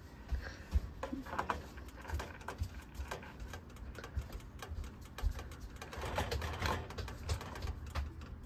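Irregular light clicks and taps of a metal measuring cup knocking against the steel #10 can and the rim of a small glass jar while thick cheese sauce is scooped and poured.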